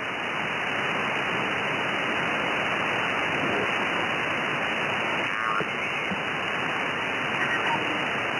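Steady hiss and band static from an Anan 8000DLE SDR transceiver receiving the 20-metre amateur band in upper sideband, limited to the narrow voice passband. The receiver is being tuned across the band, and brief garbled snatches of signals pass through about five and a half seconds in.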